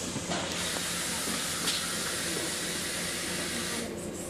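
Bus pneumatics hissing air steadily for about three and a half seconds as the bus pulls in at a stop, then cutting off, over the low hum of the bus engine.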